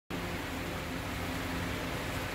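Steady room noise: an even hiss with a low, constant hum underneath.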